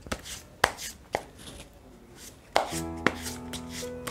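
A deck of tarot cards being shuffled by hand, giving a few sharp slaps and riffles of the cards. About two-thirds of the way in, soft background music with long held notes comes in under the shuffling.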